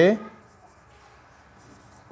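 Marker pen writing on a whiteboard: faint scratching strokes, following the end of a spoken word at the very start.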